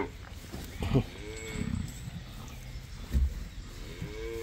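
A calf in a severe convulsive fit giving two short, weak moos, the second right at the end, with a low thump about three seconds in.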